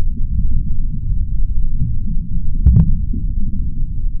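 A loud, muffled, low rumbling throb with nothing bright in it, like a soundtrack heard through heavy filtering, and one sharp double click about two and three-quarter seconds in.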